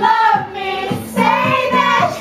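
A group of women singing together into a karaoke microphone.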